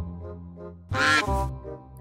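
Background music of steady held tones, with a single loud waterfowl honk about a second in that lasts about half a second.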